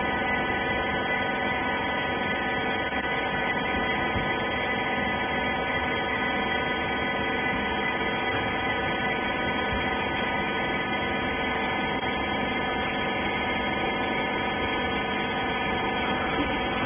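Hydraulic rag baler's pump motor running with a steady hum, made of several fixed tones, while it pushes a pressed bale of cotton rags out into a bag.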